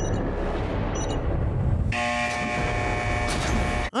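Horror film soundtrack: a loud, dark rumble of sound design. About halfway through, a sustained chord of steady tones joins it, and both cut off abruptly near the end.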